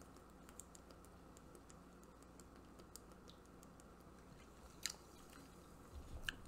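Near silence: faint swallowing and small mouth clicks from a man drinking water out of a plastic bottle, with one slightly louder click a little before the end.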